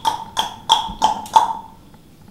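Digital slate app on a tablet sounding its countdown: a run of short, sharp beeps, about three a second, that stops about one and a half seconds in.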